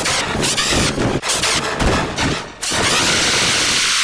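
Heavily distorted, sped-up audio-effect edit of a cartoon woman's scream of "Peter!": rapid chopped fragments of harsh, noisy sound, then a steady burst of dense hiss-like distortion for the last second or so.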